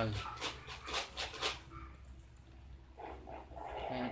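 A quick run of sharp computer mouse clicks in the first second and a half, as keys are pressed on an on-screen calculator emulator, then faint low background sound.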